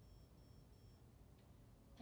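Near silence in a quiet room, with faint high-pitched electronic beeping in short, evenly spaced pulses, about three a second, that stops about a second in.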